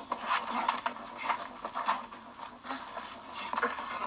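Scuffle on the episode's soundtrack: an irregular run of short scrapes, rustles and knocks as two men grapple.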